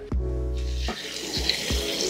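Cold water pouring in a steady stream from a plastic jug into a glass jar of coarse coffee grounds, splashing as the jar fills.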